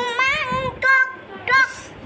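A young girl's high, sing-song voice: one long wavering chanted phrase, then two short calls.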